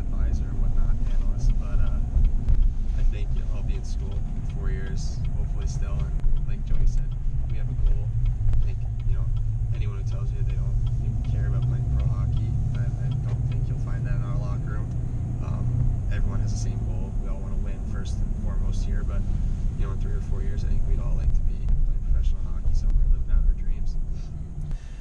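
Steady low rumble of road and engine noise inside the cab of a moving Chevy Silverado Trail Boss pickup, with faint talk over it.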